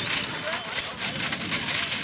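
A racing bullock cart drawn by a pair of Khillari bulls crossing dry dirt: a dense, crackling rattle from the spoked wheels and hooves. Faint distant shouts come from onlookers.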